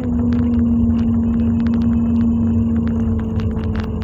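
Car engine and road noise heard inside the cabin: a steady low rumble with a hum that holds one pitch, and scattered light clicks.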